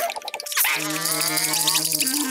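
Cartoon soundtrack: a few short plinky drip-like pips, then about two-thirds of a second in a held low note begins, with a wavering higher sound over it.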